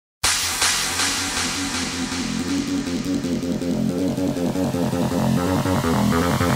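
Electronic background music with a quick pulsing rhythm, starting suddenly a moment in.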